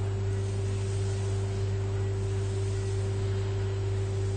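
A steady low electrical-type hum with a fainter higher tone above it over an even hiss, unchanging throughout.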